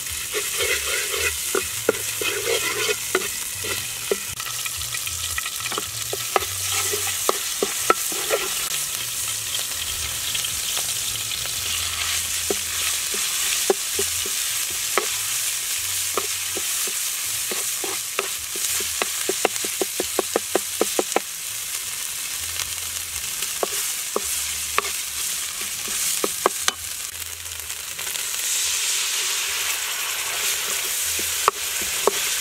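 Garlic and spice paste frying in hot oil in a non-stick wok, a steady sizzle, with a wooden spatula scraping and clicking against the pan as it stirs, in a quick run of clicks past the middle. The sizzle grows louder near the end.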